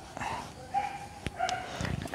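Chalk scraping and tapping on a blackboard as a word is written, with a few sharp taps about a second in. Two short, high-pitched animal yelps sound faintly in the background.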